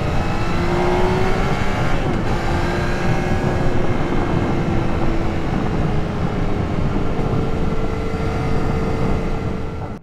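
Yamaha XSR900's inline three-cylinder engine running under way with heavy wind rush on the bike-mounted microphone. The engine note rises a little in the first second, then holds steady.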